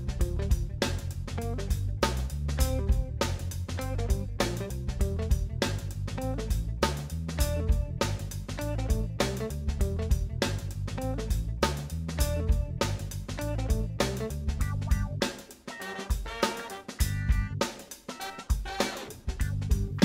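Background music with guitar and drum kit over a steady beat; the bass and low drums drop out about three-quarters of the way through.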